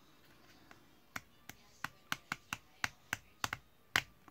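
Ratcheting hinge of a red plastic drone camera mount being turned by hand to a new angle: about ten sharp clicks at uneven intervals, starting about a second in.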